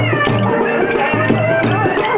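Loud Telugu kolatam folk music: a high, wavering melody line over a repeating drum beat, with sharp clicks in a steady rhythm that fit the dancers striking their kolatam sticks together.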